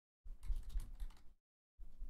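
Typing on a computer keyboard: a quick flurry of key clicks lasting about a second, then a shorter burst near the end.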